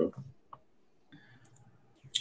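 A single short click about half a second in, after the end of a spoken word, followed by faint background noise on a video-call audio line.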